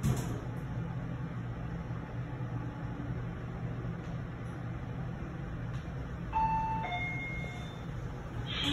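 Fujitec elevator car riding up with a steady low hum. About six seconds in comes a two-note arrival chime, the second note lower than the first, as the car reaches its floor.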